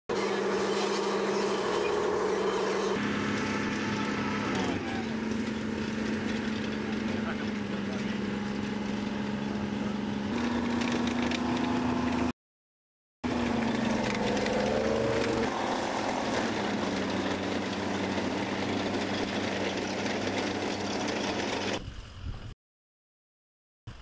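M113 tracked armored personnel carrier driving, its engine running steadily and stepping up and down in pitch several times as it changes speed.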